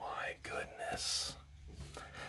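A man's soft, whispered, breathy exclamations, with a hissing breath about a second in.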